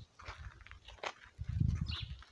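Outdoor ambience: a few short, high animal calls over an uneven low rumble on the microphone, which is loudest about one and a half seconds in.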